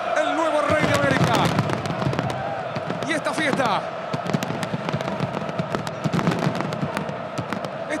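Fireworks going off in many quick, sharp bangs and crackles, thickest in the second half, over a noisy crowd with voices.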